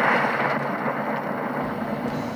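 A steady rushing noise, a transition sound effect laid under a channel logo card, easing off slightly in level.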